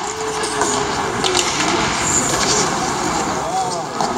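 Ice hockey game noise in an arena: a steady rush of skates on the ice, with voices calling out and a few sharp stick clacks a little over a second in.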